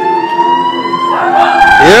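Live keyboard music: steady held chords with a long note gliding slowly upward above them. Near the end comes a loud burst of noise and a quick rising "yeah" into the microphone.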